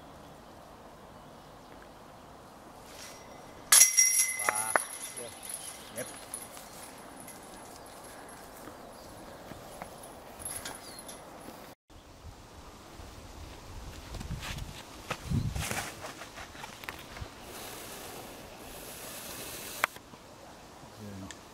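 A disc golf putt strikes the metal chains and basket about four seconds in: a sudden loud metallic crash with jingling chains ringing out briefly. Later come rustling footsteps through grass.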